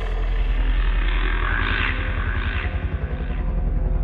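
Sound design for a logo outro: a deep, steady rumbling bass drone, with a few brighter sweeps that rise and fall in the middle.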